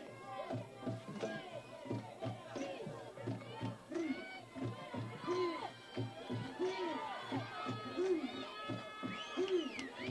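Crowd in the stands at a softball game, voices chanting and shouting with a rise-and-fall call repeating about every second and a half, mixed with music.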